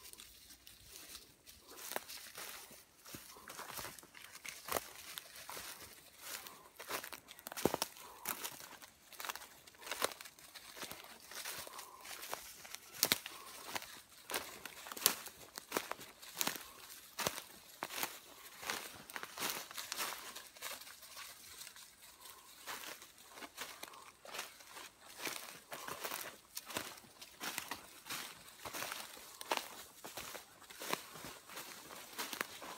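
Footsteps crunching through dry leaf litter and twigs on a forest floor at a walking pace, as a continuous run of irregular crackles with a few sharper snaps.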